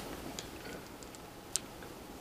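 Quiet room tone with a few faint, small clicks, and one sharper tick about one and a half seconds in.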